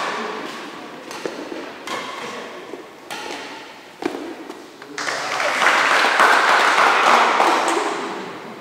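Badminton rally: sharp racket strikes on the shuttlecock, roughly one a second, ringing in a large hall. From about five seconds in, spectators applaud for around three seconds, then the applause fades.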